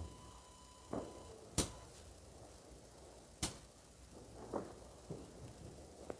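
Two sharp bangs of firecrackers going off at a distance, about two seconds apart, over a quiet background with a few fainter short sounds between them.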